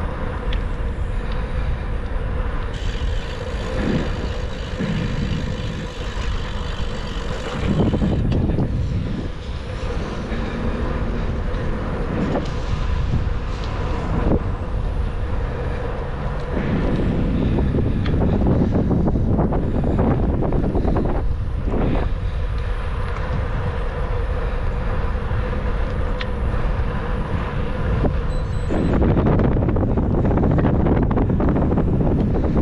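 Steady low rumble of wind on the microphone and bicycle tyres rolling on asphalt, swelling a few times as motor vehicles pass on the road alongside.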